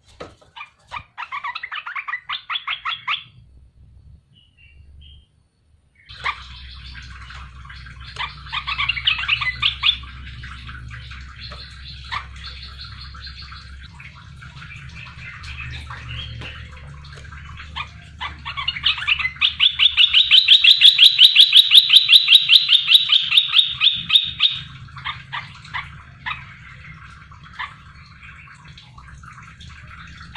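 Caged merbah belukar (a bulbul) singing in bursts of rapid repeated notes, with a short pause early on and the loudest run about two-thirds of the way through. A low steady hum runs underneath from about six seconds in.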